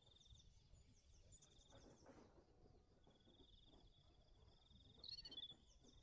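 Faint high insect trilling, a fine steady pulsing that stops and starts a few times. Brief bird chirps come about five seconds in.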